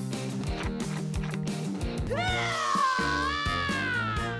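Background music with a bass line and light percussion; about two seconds in, a woman's high-pitched, wavering scream into a jar begins and runs on over the music.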